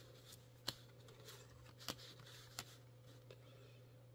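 Near silence with a few faint clicks of baseball cards being thumbed off a stack by hand, three small ones spread through, over a low steady hum.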